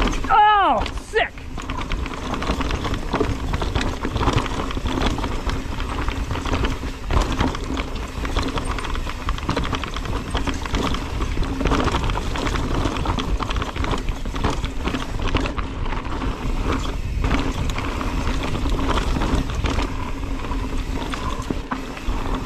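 Mountain bike descending a rocky dirt trail: a steady rush of tyre and trail noise with constant rattling and clatter from the bike over rocks and roots, and wind on the microphone. A short shout from a rider, bending down and up in pitch, comes about half a second in.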